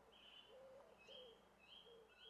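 Faint outdoor birdsong: short high calls repeating every second or so, with a few lower gliding calls in the middle.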